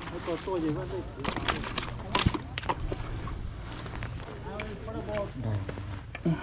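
Indistinct voices talking, with a few sharp knocks and clicks around the middle and a steady low rumble underneath.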